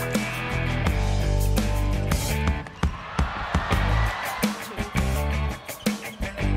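Background rock music with guitar and a steady drum beat, with a swell of noise rising about three seconds in.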